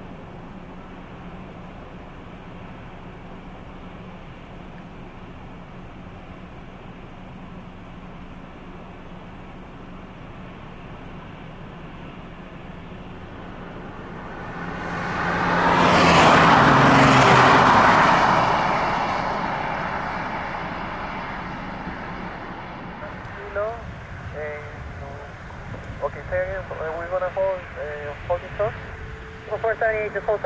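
Twin-engine jet airliner taking off: the steady engine noise swells to a loud peak about halfway through, then fades slowly as it climbs away. Air traffic control radio speech comes in near the end.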